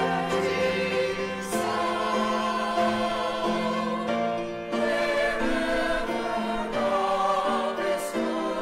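A small mixed church choir of men and women singing a hymn anthem in sustained harmony.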